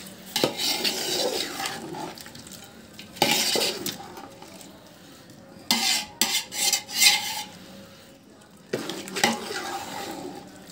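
A metal spoon stirring a thick chicken curry in a large metal pot, scraping against the pot in four bursts with short pauses between.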